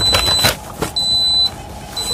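Dixell XR20CX refrigeration controller's built-in buzzer beeping in a high steady tone, about half a second on and half a second off, twice. It is sounding the controller's P4 probe alarm.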